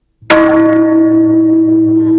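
A bell struck once about a quarter of a second in, then ringing on with several steady tones, the strongest a mid-pitched one.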